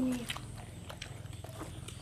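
Faint chewing and small clicks of chopsticks and dishes as people eat at a table, over a steady low hum. A brief voiced sound comes at the very start.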